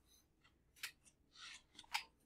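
Faint small handling sounds in a hushed room: a sharp click a little under a second in, a short rustle at about one and a half seconds, and another click near the end.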